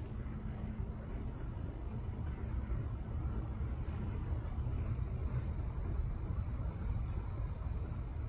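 Steady low outdoor rumble, with faint, short high bird chirps now and then.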